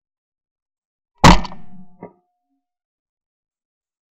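A single 12-bore shotgun shot from a Beretta 682 Gold E over-and-under, about a second in: one sharp report that dies away over most of a second, heard from a camera mounted on the gun. A much quieter short click follows a little under a second later.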